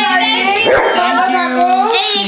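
A golden retriever whining and yipping over people's voices, with a sharp rising and falling cry about half a second in.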